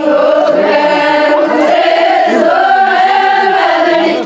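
A group of women singing an Adivasi folk song together in unison, holding long notes that slide slowly up and down.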